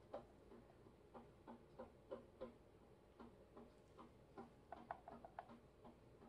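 Near silence with faint small ticks and taps: a thin paintbrush dipping into a plastic measuring jug of melted soap and dabbing into a silicone mold.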